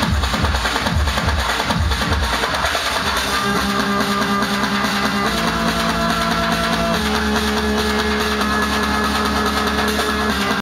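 Loud electronic dance music from a DJ set: a steady kick-drum beat until about three seconds in, then the beat drops out, leaving held chords that change twice.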